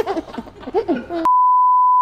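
A steady, loud single-pitch beep, the test tone that goes with television colour bars. It starts suddenly a little past halfway and holds unchanged, after a moment of quiet talk.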